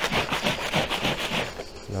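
Quick rhythmic swishing, about six strokes a second, that stops about one and a half seconds in.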